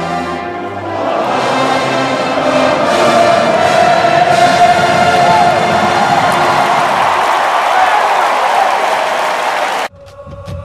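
Brass-led music over a loud, cheering stadium crowd, cutting off suddenly just before the end.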